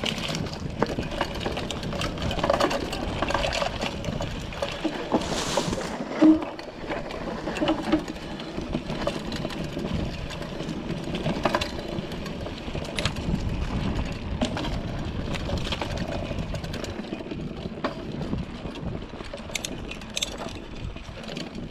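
Mountain bike riding down a dirt forest trail: tyres rolling over dirt and dry leaves with a steady rushing noise, the bike rattling and clicking over bumps, and one loud knock about six seconds in.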